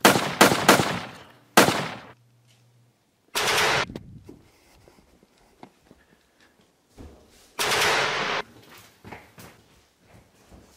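Gunfire: three quick shots right at the start and another about a second and a half in, then two bursts of rapid automatic fire, about three and a half and seven and a half seconds in.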